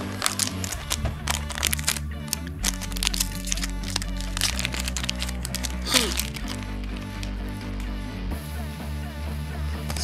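A Yu-Gi-Oh booster pack's wrapper being pulled from the box and torn open by hand, with many short crackles and crinkles, over steady background music.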